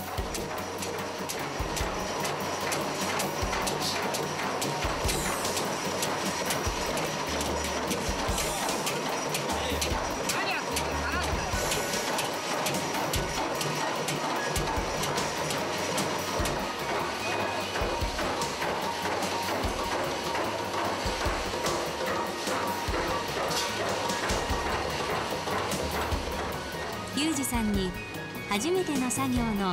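Machine hammer striking the rim of a large two-handled iron wok over and over, a rapid continuous run of metal blows, as the rim is hammered true again.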